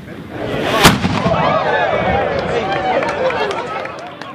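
A small ceremonial cannon fires once, a single sharp bang a little under a second in. Right after it, the watching crowd calls out and cheers.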